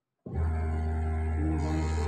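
Industrial overlock sewing machine running at speed while a T-shirt seam is fed through it. It starts suddenly about a quarter second in and runs at a steady pitch.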